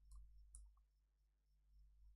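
Two faint computer keyboard keystrokes, about half a second apart, over a low steady hum.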